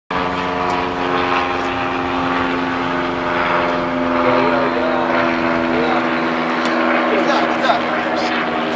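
Steady droning hum of an idling vehicle engine, holding one even pitch, with faint voices near the middle and end.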